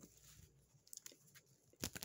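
Near silence with a few faint clicks, and one sharper click near the end.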